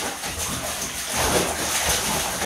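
Bathwater splashing and sloshing as children move about in a tub, an uneven noisy wash that swells a little past the middle.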